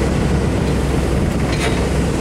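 Komatsu forklift's engine idling with a steady, even low rumble, with a couple of faint clicks late on.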